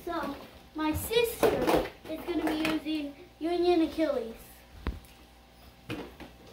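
A child talking in short phrases that the recogniser did not make out, with one sharp knock a little before the end.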